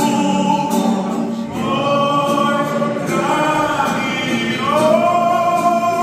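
Many voices singing a slow hymn together with a man's voice and acoustic guitar, in long held notes with a rising slide near the end.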